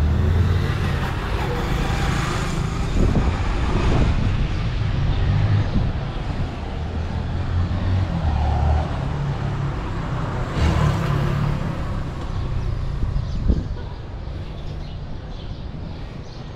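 Outdoor street noise: a steady low rumble under a general hiss, swelling about two to four seconds in and again around ten to eleven seconds.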